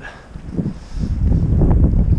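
Wind buffeting the microphone: a low rumble that grows louder about a second in.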